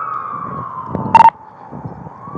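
Police siren wailing, its pitch falling slowly. A short, very loud burst with a beep cuts in a little over a second in.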